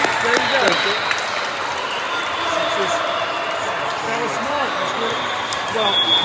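Indistinct chatter of players and spectators echoing in a large gymnasium, with a few light knocks.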